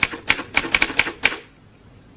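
Manual typewriter keys clacking in a quick run of strikes, typing out a name, stopping a little over a second in.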